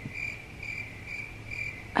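Faint, high-pitched chirping that repeats evenly, about three to four chirps a second, over a low steady hum.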